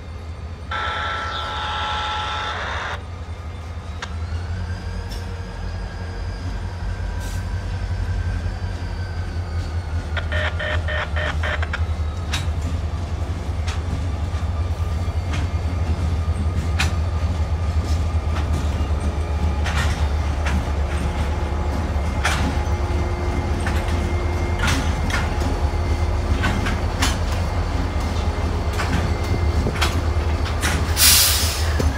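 Two CSX four-axle diesel locomotives running past at close range, their engine rumble growing louder as they approach, followed by freight cars rolling by with sharp wheel clicks over the rail joints. A brief steady high tone sounds about a second in and a short rapid ringing about ten seconds in.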